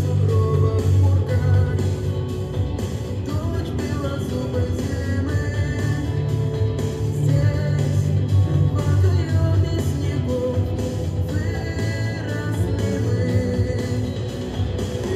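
A song playing: a woman's singing voice holding long, gliding notes over a steady instrumental backing.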